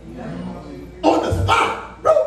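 A man's preaching voice through the room, quieter at first, then a loud, sharp shouted exclamation lasting just under a second, about a second in.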